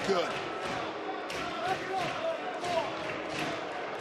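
Wrestling-arena background of crowd noise and shouting, with thuds from bodies hitting the ring.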